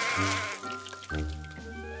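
A cartoon sheep's wavering bleat that trails off about half a second in, followed by light background music.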